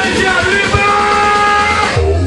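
Loud dance-party music from the DJ's sound system, with a singer holding long notes. A heavy bass beat comes in at the very end.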